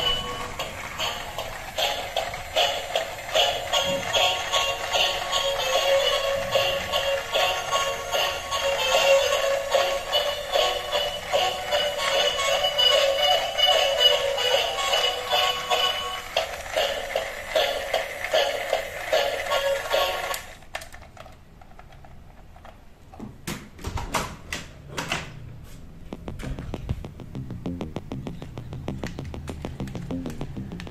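A light-up gear dolphin toy playing its electronic tune, which cuts off suddenly about two-thirds of the way through. A few sharp plastic clicks and knocks follow as the toy is handled.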